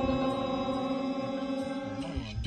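Chanted Kannada devotional song holding one steady note between sung lines, no words, its level easing slightly toward the end.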